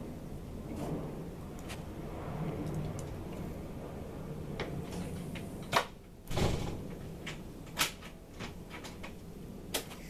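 A few sharp clicks and knocks over a low steady hum, the loudest a duller thump a little past the middle.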